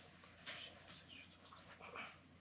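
Near silence: room tone with two faint, brief rustles, one about half a second in and one near the end.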